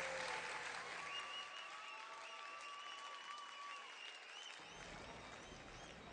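Audience applauding, dying away steadily over a few seconds, with a faint high held tone through the middle.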